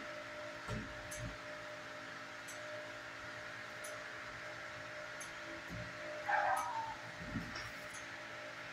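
A dog gives one short call about six seconds in over a steady electrical hum in a kennel room. A few soft low thumps come before and after it.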